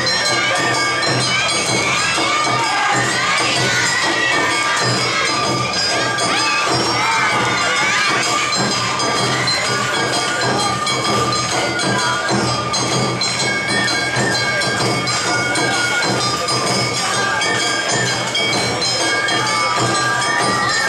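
Awa Odori festival music, with bamboo flutes playing long held notes, mixed with a crowd of voices shouting and cheering. The shouting is thickest in the first half.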